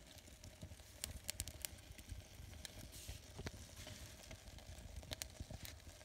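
Faint crackling of paper burning in a small cast iron cauldron: scattered small ticks and pops.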